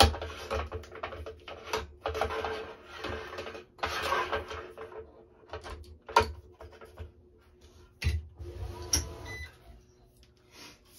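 Squash string drawn through the racket's string bed in several pulls of a second or so each, followed by a few sharp clicks from the stringing machine as the racket is worked and turned on the turntable.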